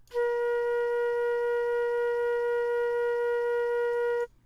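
A looped flute sample played back in the Specimen software sampler: one steady held note, starting a moment in, with a slight regular pulsing. Its loop points are set at zero crossings, so the loop repeats smoothly with no clicks, though it can still just be heard to loop.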